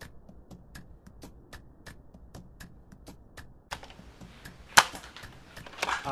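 Faint, irregular clicking, then a short noisy rattle and, near the end, one sharp loud snap: a Nerf foam-dart blaster being worked and fired.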